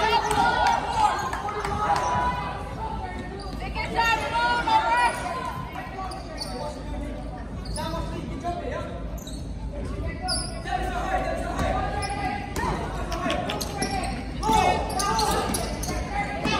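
A basketball bouncing on a hardwood gym floor in short, scattered thuds, with voices of players and onlookers calling out over it.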